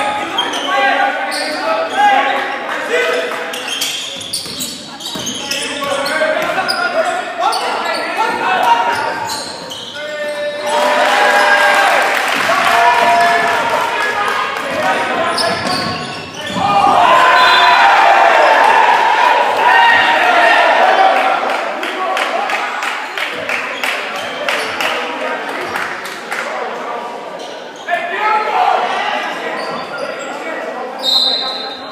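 Basketball bouncing on a hardwood gym floor during play, with many short knocks throughout, under spectators' voices echoing in the gym. The voices grow loud twice, from about ten seconds in and again from about seventeen seconds in.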